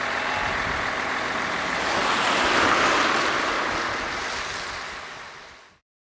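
Road-vehicle noise on a wet road, a steady hiss and rumble with no clear engine note, swelling to a peak two to three seconds in, then fading away and cutting off just before the end.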